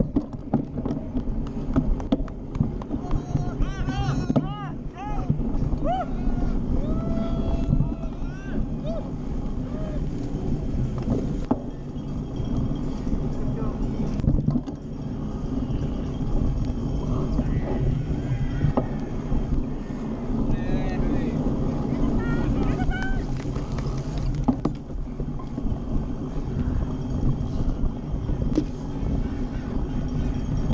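Steady low rumble, with voices calling out now and then: a few short bursts about three to nine seconds in and again about twenty seconds in.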